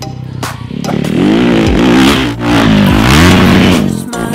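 Motocross bike engine revving hard, loud from about a second in, its pitch climbing and dropping several times, with music playing underneath.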